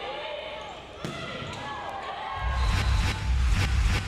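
Volleyball rally in a gymnasium: sharp hits of the ball, several spread through the clip, with players' voices calling. After about two seconds a deep low rumble comes in and grows louder.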